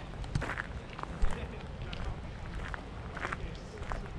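Footsteps on a gravel path, with wind rumbling on the microphone and faint voices in the background.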